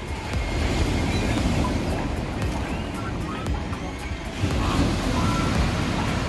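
Sea surf breaking and washing on a pebble beach, with wind rumbling on the microphone; the noise swells up about four seconds in.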